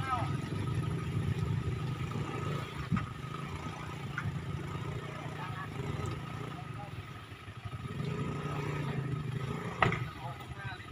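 Motor vehicle engine running low and steady, easing off about seven seconds in and picking up again, with people's voices calling out at the start and near the end and a single knock about three seconds in.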